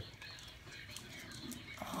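Faint, light clicks and shuffling from a dog moving about.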